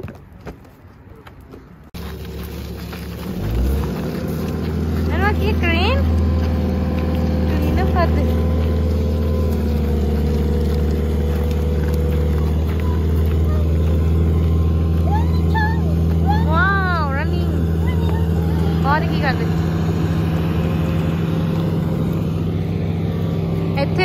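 Large truck engine idling steadily close by, coming in suddenly about two seconds in, with a short rise in pitch just after before it settles to an even, low drone.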